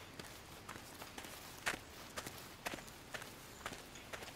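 Faint, irregular footstep-like knocks, about two a second, over a steady low hiss. The loudest falls just under two seconds in. No music plays.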